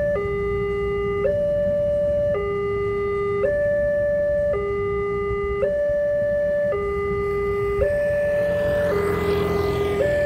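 Railway level-crossing warning alarm sounding its electronic two-tone signal, a low and a higher tone taking turns, each held about a second, over a steady low rumble. It signals that the barriers are down and a train is coming. A rushing noise swells briefly near the end.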